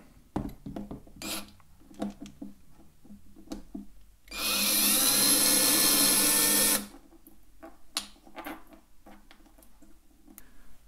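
Cordless drill-driver running in one steady stretch of about two and a half seconds, starting about four seconds in and stopping abruptly, backing out the screw that holds an accordion reed block. Light clicks and knocks from handling the drill and the reed blocks come before and after it.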